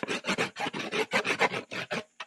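Pen or marker scratching quickly on paper as a cartoon is drawn: a rapid run of short rasping strokes, about six a second.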